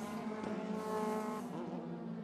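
Single-seater racing car's engine at high revs as the car passes close by. Its pitch drops about one and a half seconds in.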